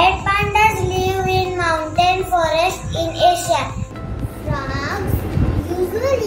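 A child singing a melodic line with long held notes over background music, followed by a shorter sung phrase about five seconds in.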